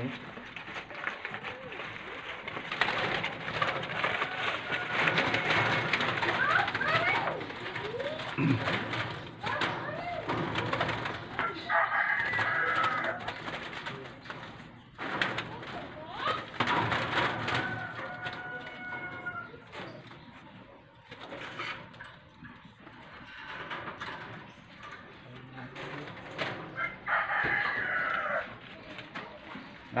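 Zebra doves (perkutut) cooing in aviary cages, calls coming on and off.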